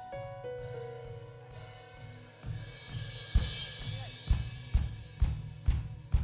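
Live church band starting an upbeat song: held chords for the first couple of seconds, then a cymbal swell and the drum kit coming in with a steady kick-drum beat about twice a second.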